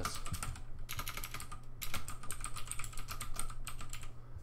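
Typing on a computer keyboard: a rapid run of key clicks spelling out a single word, broken by two short pauses.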